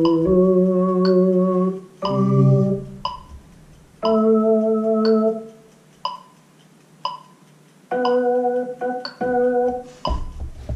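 Casio XW-G1 synthesizer keyboard played in slow held chords, each sounding for a second or two, with a quiet gap of about two seconds before the last chords. A metronome ticks steadily throughout.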